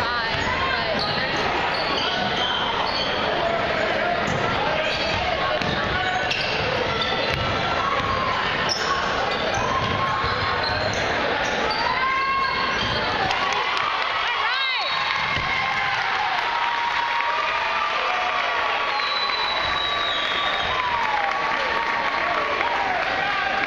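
Basketball being dribbled and bouncing on a hardwood gym floor during live play, over steady chatter and calls from the crowd. A few short high squeaks cut through, the clearest about two-thirds of the way in.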